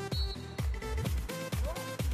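Electronic dance music with a steady kick drum, about two beats a second, under sustained synth notes.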